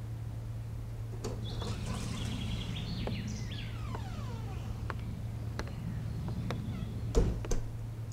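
A room door opening with a few faint high squeaks, light scattered clicks of steps on a hard floor, then the door shutting with two thumps about seven seconds in, over a steady low hum.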